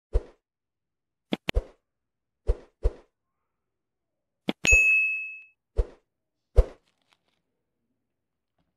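Like-and-subscribe animation sound effects: a string of short pops and sharp mouse clicks, with a single bell ding ringing out briefly about four and a half seconds in.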